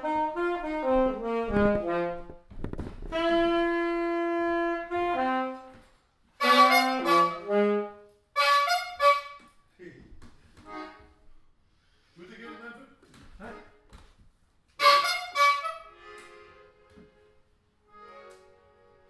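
A solo wind instrument playing a slow melody in phrases, with one long held note a few seconds in and short pauses between the later, quieter phrases.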